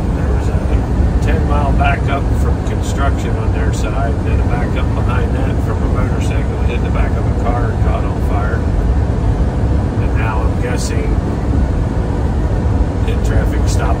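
Steady low rumble of engine and road noise inside a vehicle's cab driving at highway speed.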